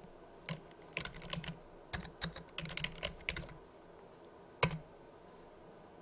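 Computer keyboard typing a short word, a quick run of keystrokes over about three seconds, then one sharper single click a little over a second later.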